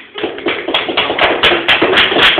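Acoustic guitar strummed hard and fast, about six or seven percussive strokes a second, coming in loudly just after the start.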